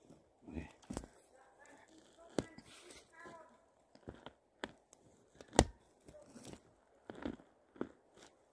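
Scattered dry snaps and crackles of twigs and forest-floor litter being handled, about half a dozen sharp clicks with the loudest about five and a half seconds in, and faint talk in the distance during the first half.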